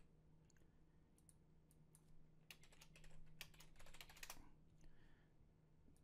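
Faint typing on a computer keyboard, scattered keystrokes with a quick run of them in the middle, over a low steady hum.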